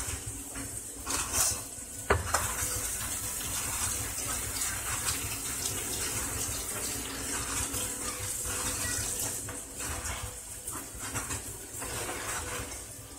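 Water running from a kitchen tap: a steady rush that starts with a click about two seconds in and stops a couple of seconds before the end.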